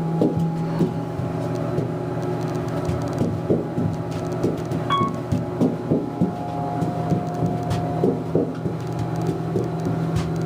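Otis Series 1 elevator cab with a steady low hum and frequent light knocks and rattles, and one short high beep about halfway through.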